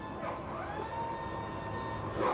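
Siren sounding: a single pitched tone that rises about half a second in and then holds steady.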